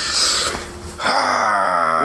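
A man's long, noisy breath in, like a hard sniff, then a drawn-out vocal moan that falls in pitch: an imitation of the rush from snorting cocaine.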